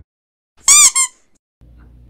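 A high-pitched squeak sound effect: one squeak about half a second in, rising then falling in pitch, followed at once by a shorter second squeak. Faint room tone comes in near the end.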